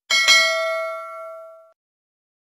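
Notification-bell sound effect: two quick dings, the second a quarter second after the first, then a few clear bell tones ringing out and fading away by about three quarters of the way through.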